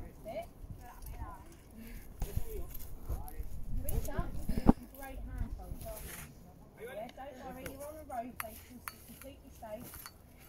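Faint voices of people talking in the background, with low wind rumble on the microphone for a few seconds in the middle. A few sharp clicks, the loudest about halfway through.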